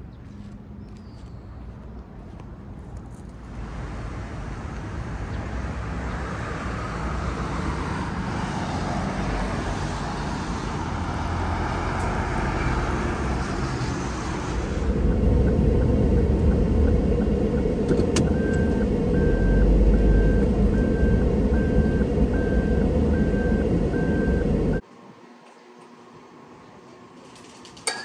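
Road traffic noise: a steady hiss of vehicles that builds, then a heavier low rumble of a vehicle on the move, with a short high beep repeating about once a second for several seconds. It cuts off suddenly near the end.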